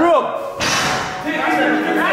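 A basketball hitting the backboard or rim with a sudden slam about half a second in, with the gym hall's echo fading after it.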